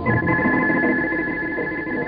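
Instrumental interlude of a 1960s Hindi film song: a high note held steady over lower orchestral accompaniment.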